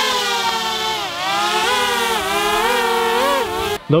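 DJI Mavic quadcopter drone hovering overhead, its propellers buzzing with a pitch that wavers up and down and dips about a second in. The buzz cuts off suddenly near the end.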